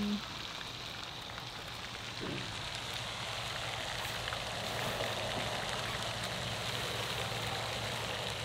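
A steady hiss of outdoor background noise by a pond, even and without any clear rhythm or distinct events.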